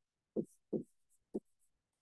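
Stylus writing on a tablet: a few short, soft taps and scratches as a word is handwritten.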